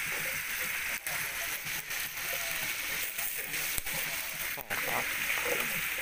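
Steady sizzling hiss of food cooking over an open wood fire.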